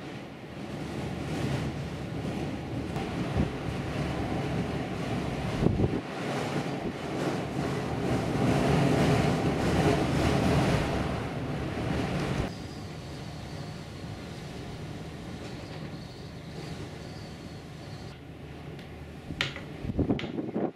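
Strong gusty wind blowing across the microphone in a rushing noise. It is loudest in the middle and drops off suddenly about twelve and a half seconds in, then carries on more quietly.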